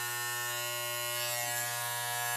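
Electric hair clippers running with a steady buzz.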